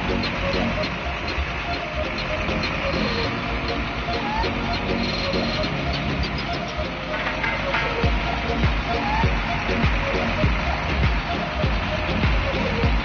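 Music and indistinct voices, with vehicle noise underneath and low thumps from about eight seconds in.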